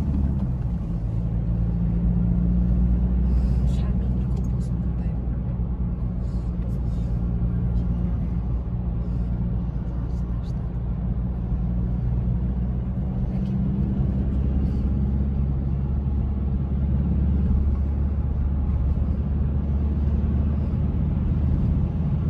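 Steady low rumble of a car's engine and tyres on the road, heard from inside the cabin while driving at speed.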